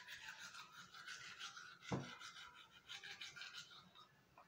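Faint, quick back-and-forth scrubbing of a manual toothbrush brushing teeth, with a single soft thump about halfway through.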